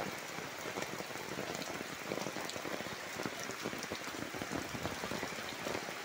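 Rain falling on standing floodwater: a steady, dense patter of drops on the water surface.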